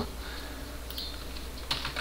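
A few faint clicks of computer keys or a mouse, about a second in and again near the end, over a low steady hum.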